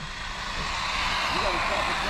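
Arrma Big Rock RC truck driving on asphalt toward the listener, its tyre and motor noise a steady hiss that grows slowly louder. A voice starts faintly near the end.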